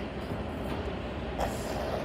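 Distant freight train of tank and mixed cars rolling past, a steady rumble of wheels on the rails. A brief sharper noise comes about a second and a half in.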